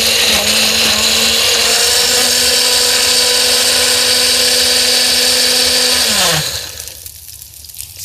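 Countertop blender running at full speed, puréeing water, a peeled lemon and a bunch of parsley into a green drink. Its motor pitch steps up slightly about two seconds in, and about six seconds in it is switched off and winds down with falling pitch.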